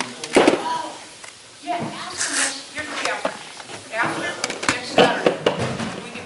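People talking in a room, the words indistinct.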